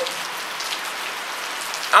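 Steady rain falling, an even, unbroken hiss.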